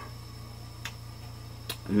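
A steady low hum of background noise under a pause in speech, with two faint short clicks a little under a second apart.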